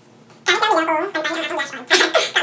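A man vocalizing without words in a drawn-out, wavering voice, starting about half a second in and held in a few stretches with short breaks.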